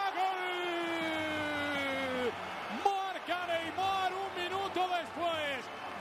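A Spanish football commentator's long drawn-out goal cry, one held note sliding down in pitch and breaking off about two seconds in. About three seconds in it gives way to rapid spoken commentary.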